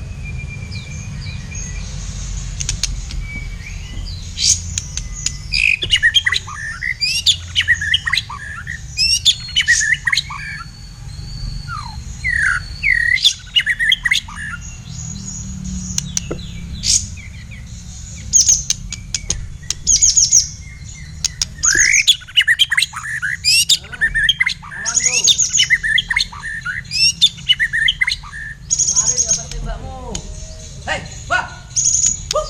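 White-rumped shama (black-tailed murai batu) singing in a cage: bursts of fast, varied whistles and chattering phrases with short pauses between, starting about five seconds in, over a steady low rumble.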